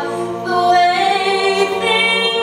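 Mixed-voice a cappella group singing sustained chords, the harmony moving to a new chord about half a second in.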